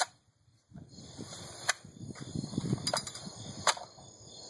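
Sharp metallic clicks and clacks from handling a UTS-15 bullpup pump-action shotgun, three distinct clicks in the second half, as the action is worked and shells are loaded. Insects chirp steadily in the background.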